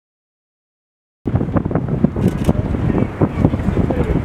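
Dead silence for about a second, then wind buffeting the microphone begins abruptly: a loud, gusting rumble that stays strongest in the low end.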